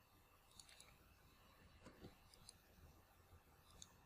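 Near silence, with a few faint, scattered clicks of a computer mouse.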